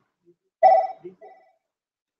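A telephone ringing in short warbling bursts: a loud one about half a second in, then a fainter one just after.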